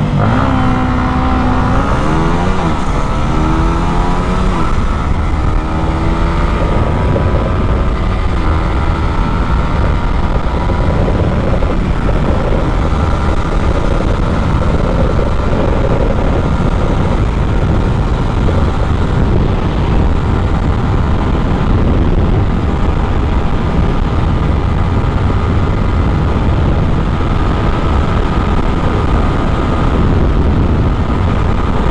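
Yamaha MT-15's single-cylinder engine under full throttle in a drag run, its pitch climbing and falling back several times in the first few seconds as it shifts up through the gears, then holding high and steady. Heavy wind rush over the onboard microphone runs under the engine.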